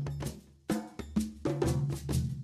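Instrumental background music with a percussion-led beat: repeated drum hits over low sustained bass notes, briefly dropping away about half a second in.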